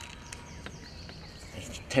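Faint open-air background, then a sharp snap near the end as a bait catapult's elastic is released, firing a pouch of maggots out as loose feed.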